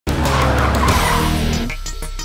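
Tyre-screech sound effect layered over intro music, giving way about three-quarters of the way through to an electronic theme with a regular beat.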